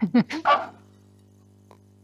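A person laughing in a brief burst of a few quick 'ha' sounds, then a faint steady electrical hum.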